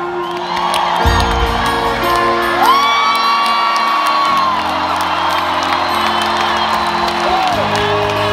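Live concert music: sustained chords that shift every few seconds, with a deep bass coming in about a second in, over an audience whooping and cheering.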